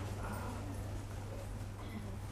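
Quiet pause with a steady low hum and faint background hiss; no speech.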